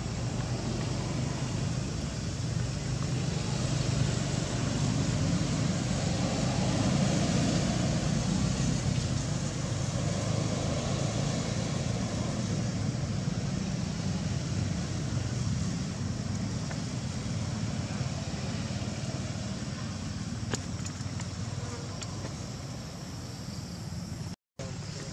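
Insects buzzing steadily, with a low drone that swells for a few seconds, louder from about four to ten seconds in.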